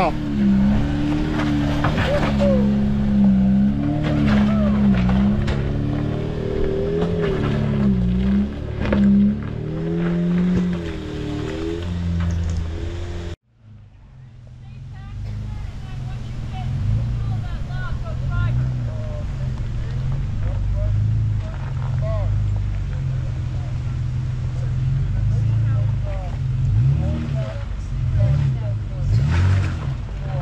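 Jeep engine running under steady throttle as it crawls up a rock ledge, its pitch rising and falling with the load. About thirteen seconds in the sound cuts off abruptly, and a lower, steadier engine sound takes over.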